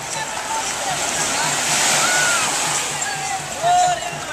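Small waves washing in over a shallow sandy beach, the wash swelling about halfway through, over distant voices and a steady low beat about three times a second. A short loud voice call near the end.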